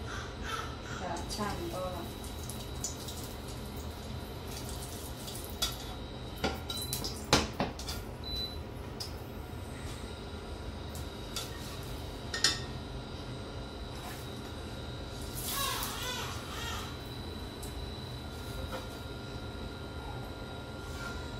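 Wooden chopstick stirring and knocking against a nonstick wok of heating oil and soy sauce, a few sharp taps, the loudest about seven and twelve seconds in, over a steady low hum.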